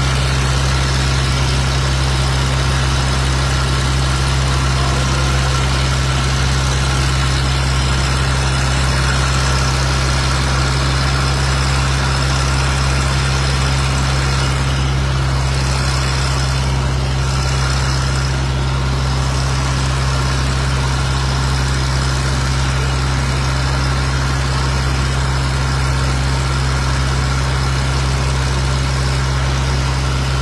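Fire truck's engine running steadily at a fixed speed beside the hose lines, a constant low drone that doesn't change.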